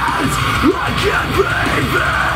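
Harsh screamed vocals into a handheld microphone over a loud metalcore backing track.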